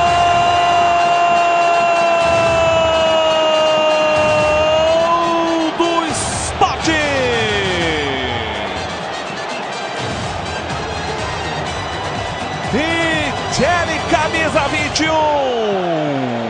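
Football TV commentator's long, held 'Gol' shout: one steady high note that runs until about five and a half seconds in, then dips and ends. Music follows, with sliding falling tones, over the broadcast background.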